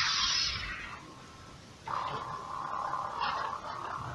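LED lightsaber's sound effects: a short hissing burst as the lit blade swings, then, about two seconds in, a steady electronic hum.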